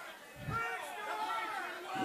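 Faint voices of the congregation calling out in response, wavering and quieter than the preacher.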